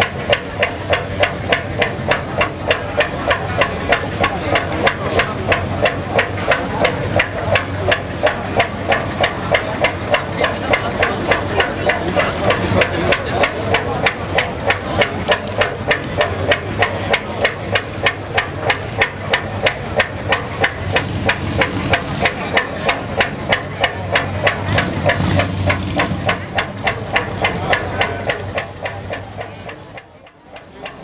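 Slow-running engine of an old wooden boat, knocking in a steady even beat of about three a second over a low hum, fading away near the end.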